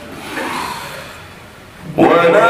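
A man's noisy breath close to the microphone in a pause in Quran recitation, swelling about half a second in and then fading; his chanting voice starts again at the very end.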